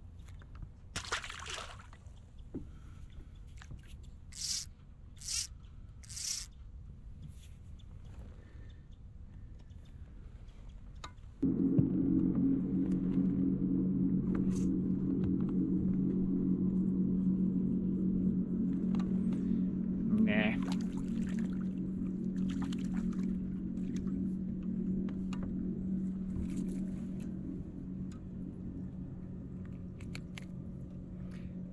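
A boat motor starts suddenly about a third of the way in and runs with a steady low hum that eases slightly toward the end. Before it starts there are a few brief scratchy rustles.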